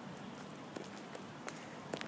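Faint, steady outdoor background noise with a few soft, scattered ticks.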